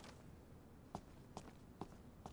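Footsteps of hard-soled shoes on a hard floor: three faint, evenly spaced steps starting about a second in, a little over two steps a second.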